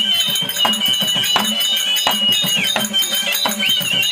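Therukoothu folk ensemble playing: a high held melody note sustained for about two and a half seconds, breaking off and returning with a waver near the end, over steady drum strokes and jingling metal percussion.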